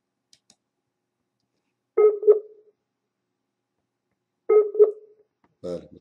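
Video-call app's alert chime, a two-note tone sounding twice about two and a half seconds apart, signalling that the call has a poor network connection and is reconnecting.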